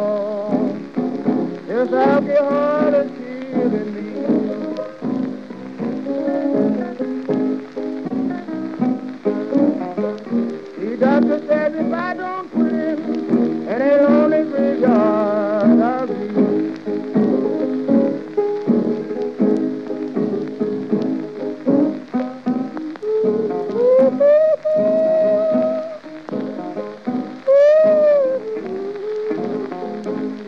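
Instrumental passage of a late-1920s piano-and-guitar blues recording, with guitar notes bending up and back down every few seconds over the piano. The record's surface crackle and hiss run underneath.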